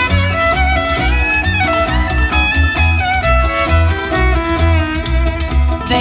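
Live bluegrass string band playing an instrumental break. The fiddle carries the melody over banjo and a steady upright bass beat.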